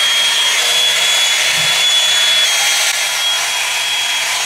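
Oval hot-air brush (blow-dryer brush) running on its fan, a steady rush of air with a thin, high motor whine, worked through the hair.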